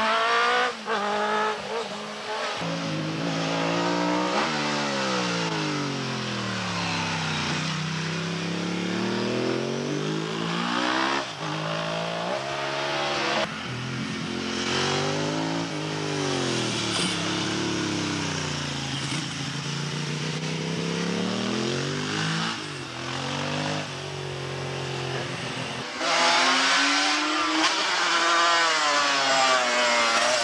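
Racing motorcycle engines at full race pace, one bike after another, with the revs rising and falling repeatedly as the riders brake into corners and accelerate out. The loudest, closest pass comes near the end.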